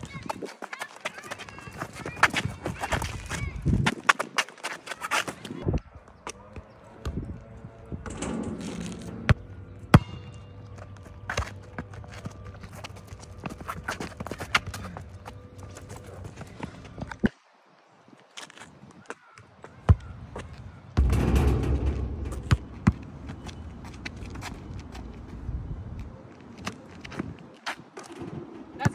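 A basketball being kicked and dribbled on an asphalt court, with many sharp knocks and thuds of the ball and sneakers scuffing on the surface, and voices now and then. A louder rush of low noise comes about three quarters of the way through.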